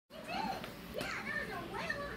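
Young children's voices, high-pitched and chattering without clear words.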